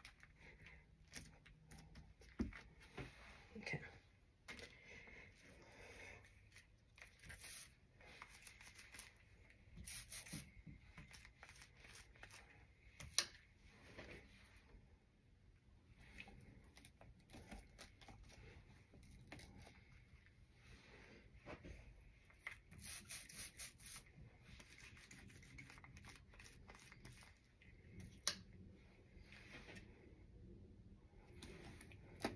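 Faint rustling and soft rubbing of hands pressing a paint-inked vegetable onto canvas and peeling it off again, with two sharp clicks, the louder about thirteen seconds in.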